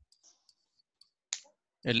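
Faint, scattered clicks and taps of a stylus writing on a pen tablet, with one sharper click just over a second in. A man starts speaking near the end.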